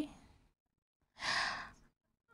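A single breath, a sigh-like rush of air into a microphone, about a second in and lasting about half a second.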